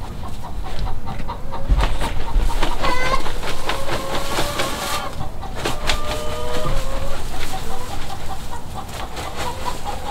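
Hens clucking and calling over and over, some calls drawn out, with rustling and knocks as a plastic bin of dry pine needles is tipped out onto the ground.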